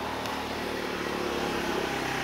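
Steady hum of a motor vehicle engine running.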